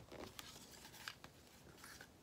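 Near silence, with faint rustling and a few small clicks of cardstock being folded and handled.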